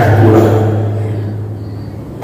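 A man's amplified voice finishing a phrase and dying away in the echo of a large hall, over a steady low hum.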